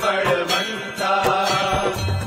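Hindu devotional aarti being chanted, a singing voice with instrumental accompaniment.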